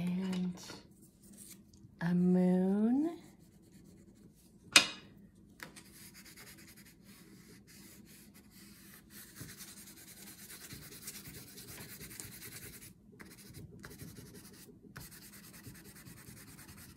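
Wax crayon rubbed back and forth across paper, colouring in a large area. Near the start there are two short hums, the second rising in pitch, and about five seconds in a sharp click; after that the steady scratchy rubbing runs on with a few short pauses.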